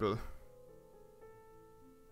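Soft background piano music with a few quiet held notes, after the tail of a spoken word at the very start.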